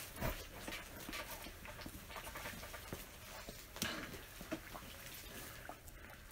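Knife and long fork cutting and pulling apart a cooked pork butt in a cast-iron Dutch oven: faint, irregular clicks and scrapes of metal utensils against the meat and the iron pot.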